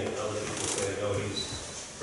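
A man speaking off-microphone, his words indistinct.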